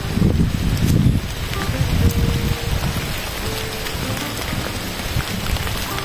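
Rain starting to fall as a storm comes in, a steady noisy patter with a dense low rumble on the microphone.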